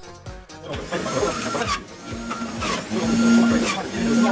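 Electric juicer running: a steady motor hum that comes in and grows louder about halfway through, with background music.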